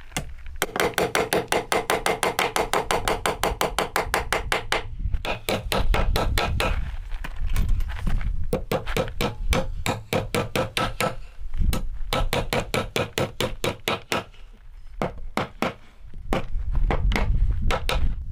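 Hammer driving nails into a timber post: several runs of quick, even blows, about five or six a second, with short pauses between runs, the first run ringing.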